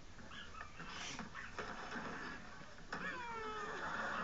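Sitcom studio audience reacting to an on-screen kiss: a swell of crowd noise builds from about halfway in, with high whoops and squealing cries sliding down in pitch near the end.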